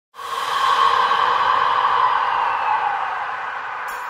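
A long airy whoosh of noise that starts abruptly and slowly fades over a few seconds, drifting slightly down in pitch: a sound-effect sweep opening the song.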